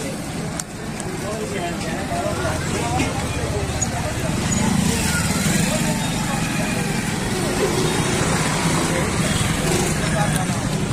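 Busy street ambience: motorcycle engines passing close by over the babble of people talking.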